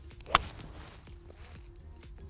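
A golf 7-iron striking the ball off the fairway turf: one sharp click about a third of a second in, ringing briefly. The strike is more of a sweep, ball and ground taken together rather than ball then turf.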